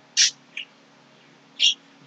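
A man's short hissy breath and mouth noises in a pause between sentences: one about a fifth of a second in, a fainter one shortly after and another near the end, over quiet room tone.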